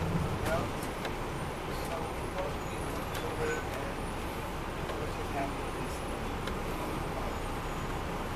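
Inside a 2002 MCI D4000 coach on the move: the steady rumble of its Detroit Diesel Series 60 engine and road noise.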